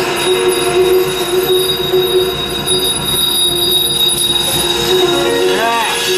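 Live improvised jazz band playing held, droning notes with a thin high steady tone over them; just before the end a quick pitch bend rises and falls.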